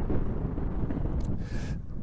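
Wind buffeting the microphone: a steady low rumble with no other clear sound.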